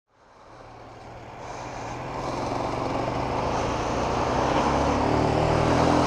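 Motorcycle engine running while riding in traffic, with wind and road noise on the bike-mounted microphone; the sound rises from silence over the first two seconds, then holds steady.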